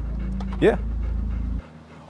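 A dog panting over a steady low hum that cuts off suddenly about one and a half seconds in.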